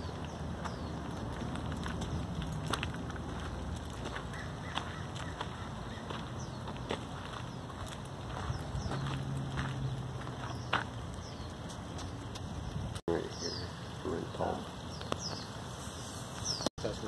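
Outdoor ambience: a steady low rumble with scattered short, high bird chirps and a few light clicks. A voice speaks briefly near the end.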